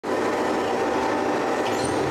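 Banknote destruction machine running: a loud, steady mechanical whir as shredded banknote chips churn inside its steel cylindrical tank.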